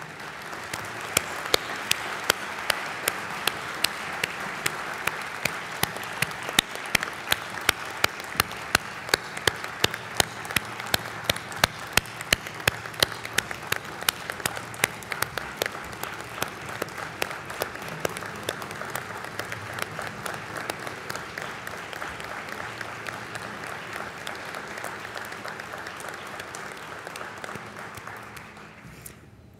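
Audience applauding, a dense even clapping. Through the first half one clapper stands out with loud, sharp, evenly spaced claps. The applause fades gradually near the end.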